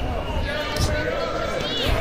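A few dull thuds in a boxing ring, from the boxers' feet or gloves, under shouting voices from the corners and crowd.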